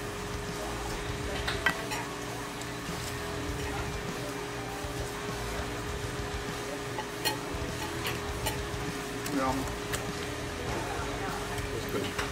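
Restaurant table noise during eating: a steady hum with low rumble, quiet background music, and a few scattered sharp clicks and clinks from handling food and the paper-lined baskets.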